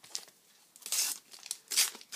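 A Panini sticker packet being torn open by hand, its wrapper tearing and crinkling in a few short rustling bursts, the loudest about a second in and another near the end.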